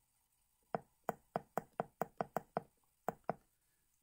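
Keypad of a Danatronics EHC-09 ultrasonic thickness gauge clicking as the arrow key is pressed over and over, a quick run of about a dozen faint clicks, then two more near the end. Each press steps the displayed thickness up toward the known block thickness during calibration.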